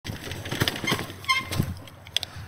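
Bicycle rolling over cobblestones strewn with fallen leaves, giving irregular rattles and clicks, with a short squeak about halfway through as it slows to a stop.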